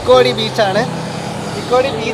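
A man talking, with a steady low hum underneath for the first second and a half.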